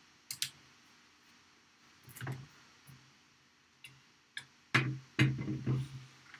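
A lamp being handled and moved into place: a couple of sharp clicks at first, a soft knock about two seconds in, then louder knocks and rattling over the last second and a half.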